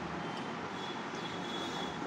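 Steady background noise, an even hiss and rumble, with a faint thin high tone in the second half.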